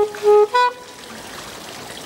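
Saxophone playing a quick run of short, detached notes that breaks off about two-thirds of a second in, leaving only a quieter background for the rest.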